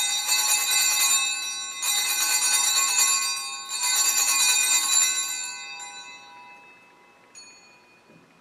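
Altar bells rung three times in quick succession as the chalice is elevated after the consecration, each ring a bright, shimmering cluster of high tones that dies away slowly. A faint short ring follows near the end.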